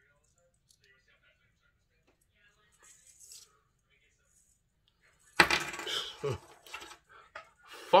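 Small metal clinks of a diffuser-locket necklace's chain and clasp being handled while it is fastened at the neck: faint ticks about three seconds in, then a sudden louder burst of clinking and rustling from about five and a half seconds to about seven.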